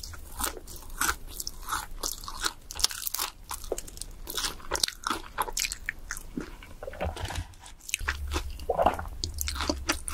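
Close-miked biting and chewing of crispy fried chicken: a steady run of sharp crunches as the fried coating breaks, with chewing between the bites.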